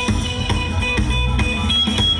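Live rock band playing an instrumental passage: drum kit keeping a steady beat under bass, electric guitar and keyboard, with high held lead notes on top.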